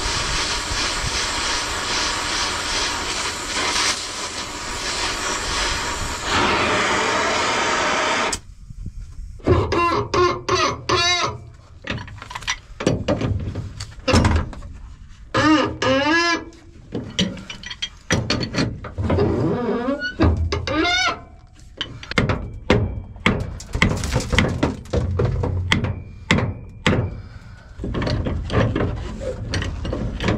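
Gas torch hissing steadily as it heats the block around a seized pivot pin, cutting off about eight seconds in. A pipe wrench then works the heat-loosened steel pin in the combine's swing-auger cylinder mount, with repeated metal clanks and short squeaks as the pin is twisted.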